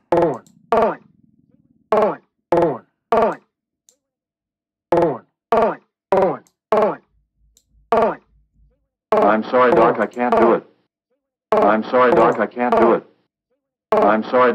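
A drum-machine app triggering an imported spoken-voice sample: about a dozen short, clipped vocal hits, each falling in pitch, then from about nine seconds in the full sampled phrase "I'm sorry, Doc, I can't do it" plays twice.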